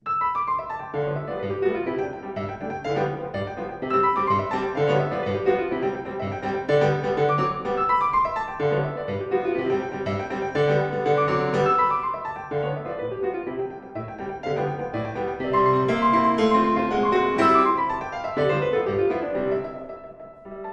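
Steinway concert grand piano played solo in a busy, rhythmic piece, with dense chords and quick runs across the keyboard. It begins abruptly.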